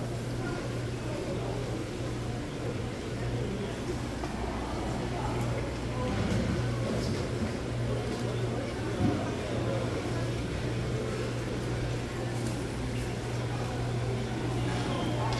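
Busy market ambience: indistinct chatter of vendors and shoppers over a steady low hum, with a brief knock about nine seconds in.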